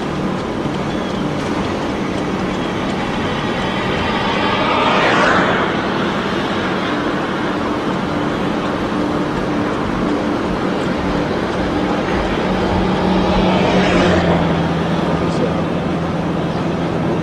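Road noise of a car being driven on a highway: a steady engine hum under tyre and wind rush, which swells up twice, about five seconds in and again late on.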